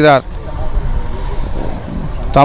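A man's word ends right at the start, then about two seconds of steady low rumble and hiss of outdoor street background noise before he speaks again.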